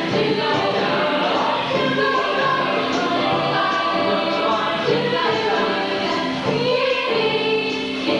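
Show choir singing a jazz number, several vocal parts layered over one another with a steady rhythmic pulse.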